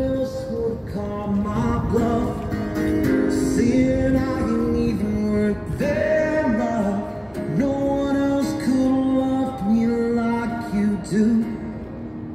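A male street singer singing a slow song with long held notes, strumming an acoustic guitar, amplified through a small portable amplifier.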